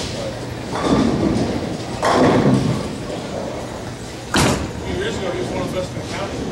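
Ten-pin bowling alley noise: repeated crashes and rumbles of balls and pins from the lanes, with a sharp knock about four and a half seconds in, over background voices.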